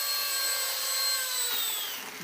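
Micro electric RC Bell 222 Airwolf helicopter's motor and rotors whining steadily as it hovers and sets down on a landing pad. The whine drops in pitch near the end as it settles onto the pad.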